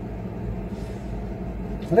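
Steady low mechanical hum of background room noise, with a faint steady tone in it. A man starts speaking right at the end.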